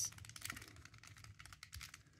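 Square-1 puzzle being turned quickly by hand: a rapid, irregular run of faint plastic clicks as its layers are twisted and sliced.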